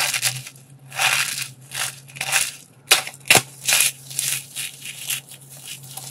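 Hands crushing a dried soap box filled with soap curls: a run of crisp crunches and crackles, loudest in the first four seconds, with two sharp snaps a little after three seconds and smaller crunches after that.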